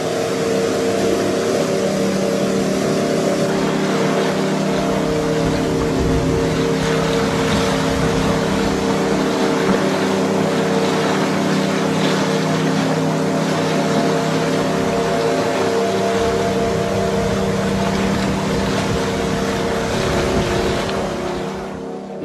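Loud, steady rushing of a shallow woodland stream running over rocky rapids, under a low drone of held tones.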